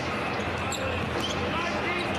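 Live basketball arena sound: a steady crowd hum, with a basketball being dribbled on the hardwood court as play moves up the floor.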